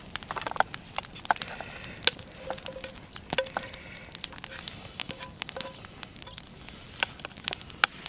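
Wood campfire crackling, with irregular sharp snaps and pops.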